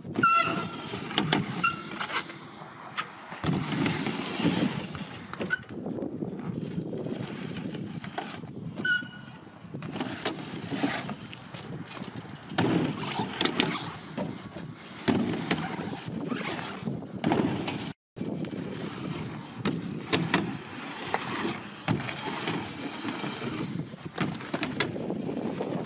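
BMX bike riding a mini ramp: tyres rolling across the ramp surface in repeated swelling passes, with sharp knocks from landings and a few brief squeaks.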